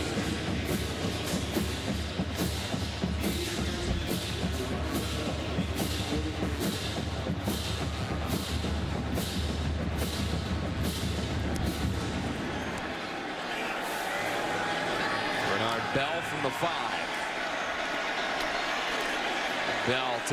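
Stadium music with a steady drum beat over crowd noise. The music stops about 13 seconds in, leaving the crowd, which swells a few seconds later.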